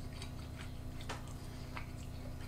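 Soft eating sounds: a few short, sharp clicks of chopsticks on a ceramic rice bowl and mouth noises while chewing, about one every half second, over a steady low hum.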